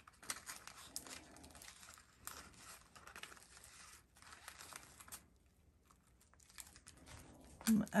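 Faint crinkling and rustling of a glitter ribbon bow and its paper backing being handled and cut with scissors, with small clicks of the blades. It goes quiet for about a second past the middle.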